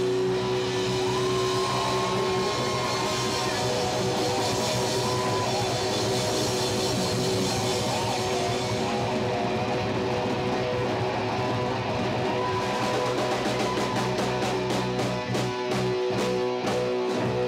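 Live hard rock band: an electric guitar plays a lead with sustained, bending notes over bass guitar and a drum kit. In the last few seconds the drums break into a fast run of hits.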